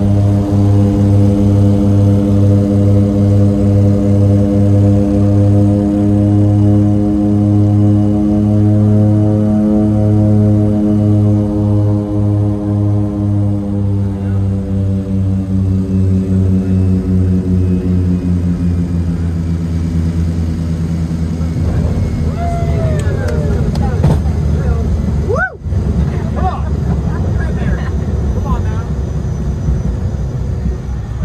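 Twin turboprop engines and propellers droning in the cabin with a steady beating throb, the pitch sagging as power comes back on the landing approach. A little past two-thirds of the way through, the drone gives way to a rougher rumble of the wheels rolling on the runway after touchdown.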